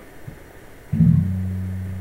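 Ken Smith Burner electric bass struck once about a second in: a low note rings out and slowly fades.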